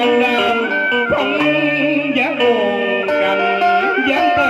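Traditional Vietnamese funeral music. Melodic instruments play ornamented lines that slide between notes over held tones, steady and continuous.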